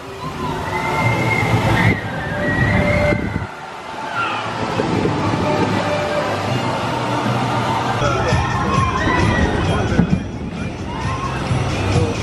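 Outdoor theme-park ambience cut together from several shots: visitors' voices, splashing water and faint background music. It changes abruptly at each cut.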